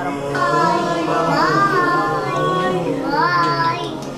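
Background music with a single singing voice holding long notes that glide up and down, easing slightly in level near the end.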